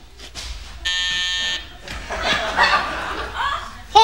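An electric door buzzer sounds once, a steady buzz of under a second, followed by studio audience laughter.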